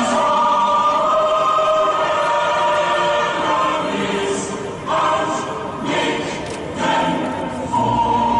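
Choral music: a choir holding long sustained chords, with new chords coming in about five and seven seconds in.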